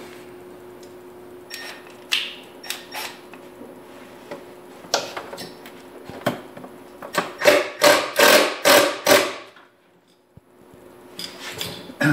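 Knocks and clicks of a small plastic relay box being handled and screwed onto a sheet-metal electrical cabinet, with a run of about seven louder strokes a little past the middle. A steady low hum runs underneath.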